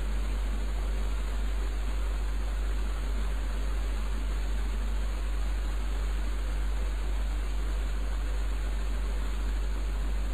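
Steady recording noise: a constant low hum with an even hiss over it, unchanging throughout, with nothing else happening.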